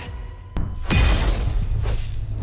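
Sound-effect sting for an animated logo card: a single click, then about a second in a sudden loud crash with a deep boom that dies away into a low drone.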